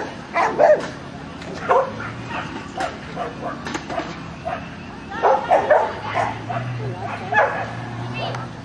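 Dog barking in short, sharp yips, repeated in clusters several times, while running an agility course.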